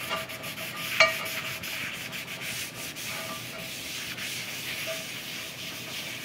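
Folded paper towel rubbing flaxseed oil over the inside of a carbon steel skillet: a steady dry scrubbing. A single sharp knock about a second in.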